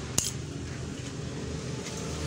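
Motorcycle ignition key turned in its switch: one sharp metallic click just after the start, switching on the ignition. A low steady hum follows.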